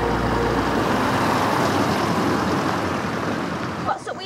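A car driving close past, a steady engine and tyre noise that eases off toward the end, while the tail of the theme music dies away in the first second.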